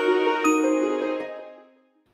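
End of an intro music piece: a chime is struck about half a second in over held tones, and the sound rings on and fades out near the end.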